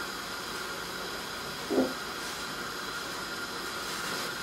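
Steady hiss of a lit gas hob burner heating a glass saucepan of water and herb, with one brief low sound a little under two seconds in.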